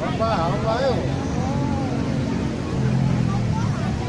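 Voices calling out across a football pitch in the first second, over a steady low rumble.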